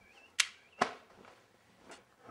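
Two sharp knocks about half a second apart, then a fainter one near the end.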